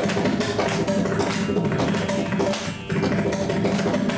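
Mridangam played in a fast, dense stream of strokes, its tuned head giving a pitched ring on many of them, with a short lull a little before three seconds in.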